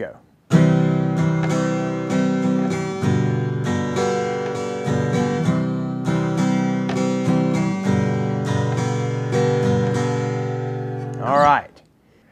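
Acoustic guitar strummed in a down, down, up, up, down, up pattern, changing chords a few times. The downstrokes hit the low strings and the upstrokes catch only the top strings.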